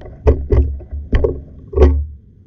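Four sharp knocks, each with a deep thud, irregularly spaced over a low rumble, picked up by an underwater camera.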